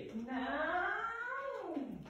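A single long, drawn-out vocal sound that rises and then falls in pitch, quieter than the talk around it.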